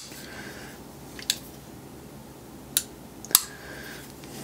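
Three short, sharp clicks from handling a Hinderer XM-24 folding knife: one, then a pair close together near the end, the last the loudest.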